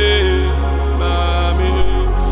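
A man singing a slow gospel worship song, holding long notes over sustained backing music with a deep steady bass.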